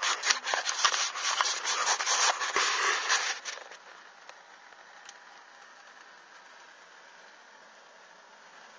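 Cloth rubbing and crackling against the microphone, dense with sharp clicks, stopping about three and a half seconds in and leaving only a low hiss.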